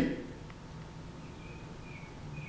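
Quiet room tone with a faint steady low hum, and a few faint short high chirps in the second half.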